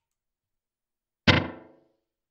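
Electric guitar struck once, about a second and a quarter in, through a Catalinbread Adineko oil-can delay pedal set to its shortest delay time; the sound rings briefly and dies away within about half a second.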